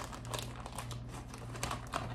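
Plastic packaging crinkling in irregular crackles as it is handled and opened, over a faint steady low hum.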